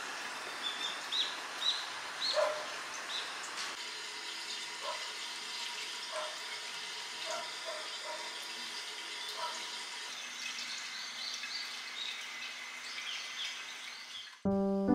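Steady hiss of falling rain with a small bird chirping several times. About four seconds in it changes to hot-spring water pouring from a spout into a bathtub, with bird chirps going on over it.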